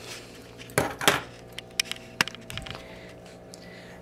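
Raspberry Pi circuit boards and add-on plate being handled: several light clicks and knocks of the boards in the hand, mostly in the first three seconds, over a steady low hum.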